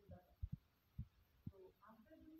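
Near silence in a small room, with a few soft low thumps and a faint murmur of voice.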